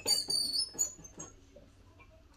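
Short, high-pitched metal squeaks, then a few small clicks, as a heat press's pressure-adjustment knob and threaded screw are turned back after being cranked too tight.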